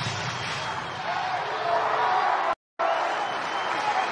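Ballpark crowd noise: a steady roar of many voices, broken by a split-second cut to silence in the third second.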